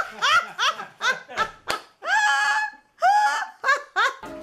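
A person laughing in high-pitched squeals: a run of short rising yelps, then two longer held squeals a little past the middle.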